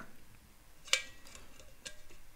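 Small metal clicks from a vernier caliper against a stainless steel tumbler as it is handled: one sharp click about a second in, then a couple of fainter ticks.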